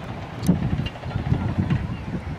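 Wind buffeting the microphone in uneven gusts, a low rumble that swells about half a second in, with a sharp click at that moment.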